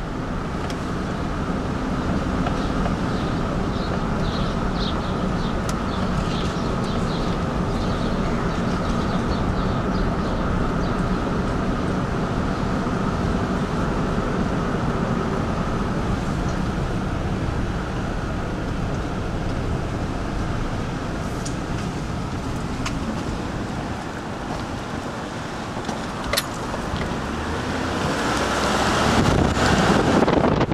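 Car driving slowly, heard from inside the cabin: a steady engine hum with tyre and road noise. A rush of wind noise swells near the end.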